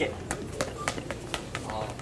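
Quick footsteps on a hard store floor, sharp taps about three to four a second, with a brief faint voice near the end.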